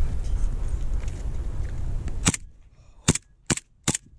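Airsoft pistol firing four sharp shots: one about halfway through, then three more in quick succession near the end.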